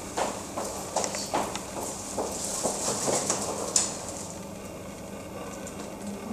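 A run of light, irregular knocks and clicks over about four seconds, the sharpest one near the end of the run, followed by quieter room tone.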